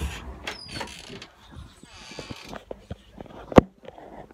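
Handling noise from a handheld phone camera: rustling and scattered clicks and creaks, with one sharp knock about three and a half seconds in.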